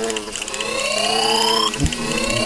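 Whooping alarm siren sound effect: a tone that rises in pitch for about a second, then drops back and starts rising again near the end.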